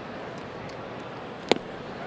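Steady ballpark crowd murmur, with one sharp pop about one and a half seconds in: an 88 mph pitch smacking into the catcher's mitt on a swinging strike.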